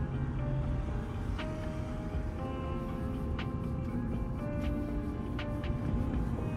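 Soft background music of long held notes, over the low rumble of a car in motion.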